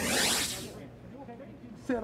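A broadcast transition whoosh: a short swell of hissing noise lasting about a second, the sound effect that accompanies the graphic wipe out of a replay.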